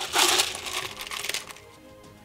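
Ice cubes clattering and clinking against hard plastic as a cup is scooped into an insulated cooler jug of ice. The rattling runs for about the first second and a half, then dies away.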